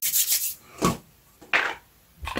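Handling noise: three short bursts of rubbing and scraping, the first and longest in the first half second, then one just before the middle and one about three quarters of the way through.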